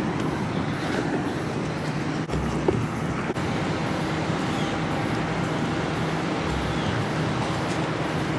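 Steady low hum of an idling vehicle engine over outdoor traffic noise, with a few brief low rumbles.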